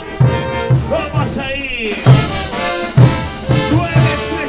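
Large Peruvian brass band playing a chuta: massed trumpets, trombones, saxophones and sousaphones over a steady bass-drum beat with cymbals.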